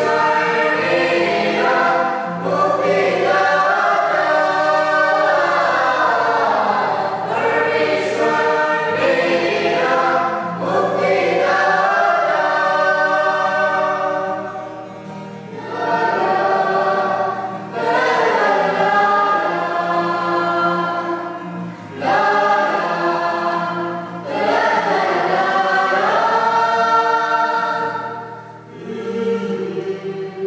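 A group of voices singing a Nepali Catholic bhajan together, phrase by phrase with short breaths between, over low held accompanying notes.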